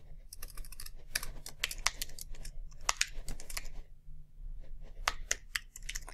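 Typing on a computer keyboard: quick runs of key clicks broken by short pauses.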